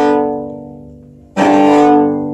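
Cello played with the bow: a held note fades away over about a second, then a fresh bow stroke starts sharply about one and a half seconds in and is held. The bow is rolling between two neighbouring strings in a bowing exercise.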